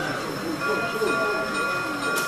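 O gauge model diesel switcher locomotive running slowly on the layout. About half a second in, a steady high tone of several notes comes in and holds, over the chatter of voices.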